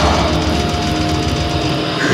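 Death metal band playing live: heavily distorted guitars over fast, dense drumming, with one high note held for about a second and a half through the middle.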